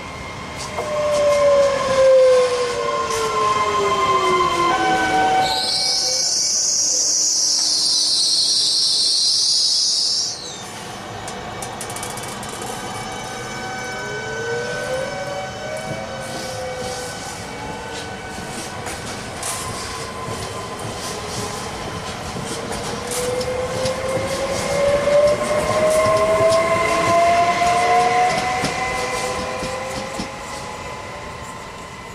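Trenitalia Pop electric multiple units (Alstom Coradia Stream) running through the station. At the start their traction motors whine with several tones sliding down in pitch as a train passes and moves off. A few seconds in, a loud shrill high sound lasts about five seconds and cuts off sharply. In the second half another unit's motor whine rises in pitch as it comes closer.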